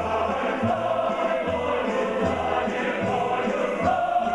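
Ukrainian folk choir singing sustained, slowly moving lines, with instrumental accompaniment keeping a regular low beat underneath.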